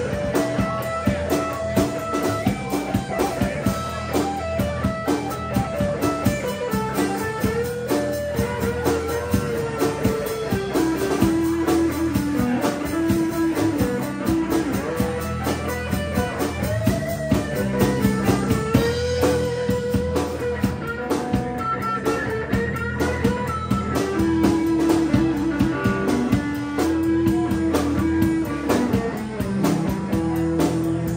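Live rock band playing an instrumental stretch: a lead electric guitar carries a melody of held and bent notes over bass guitar and a drum kit with constant cymbals.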